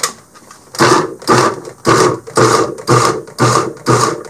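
Small electric food chopper pulsed in short bursts, about two a second, starting about a second in, its motor and blade chopping garlic scapes in olive oil.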